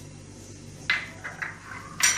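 A few light knocks of a small glass bowl, the sharpest about a second in and a few smaller ones just after, as cumin seeds are tapped out of it into a steel mixing bowl and it is put down. A low steady hum lies underneath.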